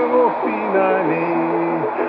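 A man singing a long, drawn-out 'na' that steps down in pitch, accompanied by his own ukulele, which is slightly out of tune.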